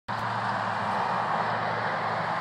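Steady outdoor background noise: an even rush with a low hum underneath.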